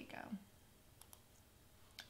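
A couple of faint computer mouse clicks about a second in, against near silence.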